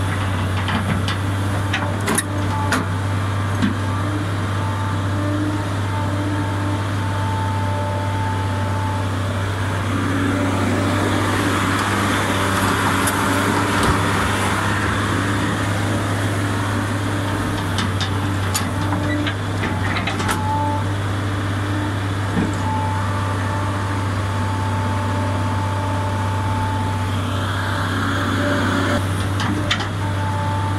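Hydraulic excavator's diesel engine running steadily with a low hum, working harder and louder for a few seconds near the middle. A few sharp knocks about two seconds in and again around twenty seconds.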